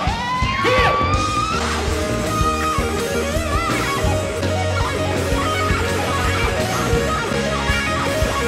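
Rock music led by electric guitar, with a long note gliding upward in the first second or so.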